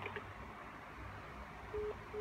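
Low hiss on an open phone line, then near the end a single short beep through the phone's speaker. It is the first beep of the busy tone that signals the call has been cut off from the other end.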